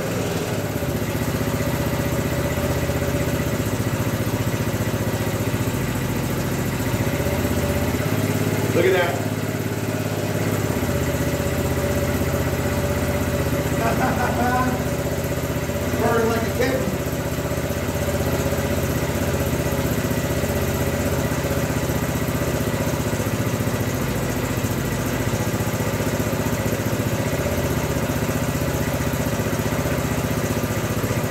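1969 Honda CT90's small single-cylinder four-stroke engine idling steadily, running cold with the choke off. A few brief sounds rise over it about 9 seconds in and again around 14 to 17 seconds.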